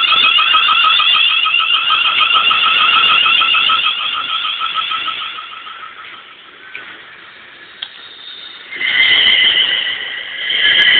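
Electric train horns: a rapid warbling run of horn notes that fades away over the first half. Near the end comes a loud, steady two-tone horn blast.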